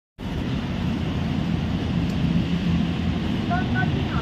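Street noise: a steady low rumble of traffic, with wind on the microphone and indistinct voices; a short pitched sound, likely a voice, comes in near the end.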